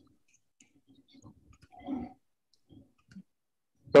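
Near silence on a video-call line, broken by a few faint clicks and a soft murmur about halfway through. A voice starts a word at the very end.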